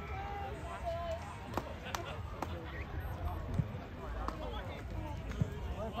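Indistinct voices and calls over a low rumble, with about six sharp knocks scattered through, the loudest about three and a half seconds in.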